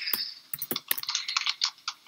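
Computer keyboard typing: a run of irregular keystroke clicks as text is entered into a document.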